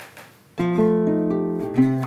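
Acoustic guitar strumming a few sustained chords, coming in about half a second in, with a chord change near the end.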